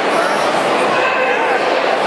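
Steady crowd chatter from many people in a large hall, with a few individual voices rising above the murmur.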